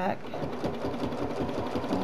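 Domestic sewing machine stitching at a fast, steady rate, free-motion quilting along a curved ruler with a ruler foot; it starts up just after a spoken word near the start.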